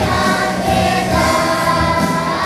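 A group of young children singing a Hebrew song together over recorded music, held notes gliding between pitches.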